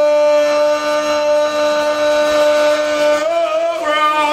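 Live blues-rock band holding one long, steady note for about three seconds, with a slight shift in pitch near the end.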